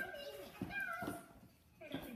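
A high-pitched voice making short calls that glide in pitch, without clear words, fading out after about a second and a half.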